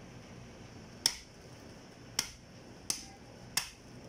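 Meat cleaver chopping into a cow's head on a wooden block: four sharp strikes at uneven intervals.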